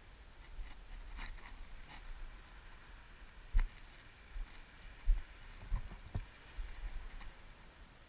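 Low wind rumble on a body-worn camera microphone, with a few light clicks and several dull thumps from the camera and its wearer moving about, the loudest about three and a half and five seconds in.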